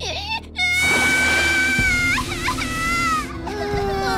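A small cartoon creature whimpering in short high squeaks, then breaking into a loud, high-pitched wail held for about two and a half seconds, over music.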